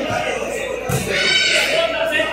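Voices of players and onlookers at an ecuavoley game. A single dull thump of the ball being struck comes about a second in.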